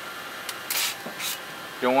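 A light click, then two brief crinkling rustles of the aluminium foil wrapped around a rotisserie turkey as a meat thermometer probe is pushed through it.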